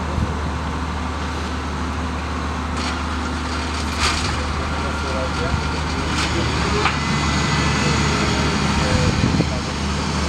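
Steady outdoor rumble and hiss with faint voices in it, and a few short clicks.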